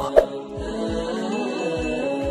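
Intro music: a steady, chant-like held chord, with deep low booms that drop in pitch about three times.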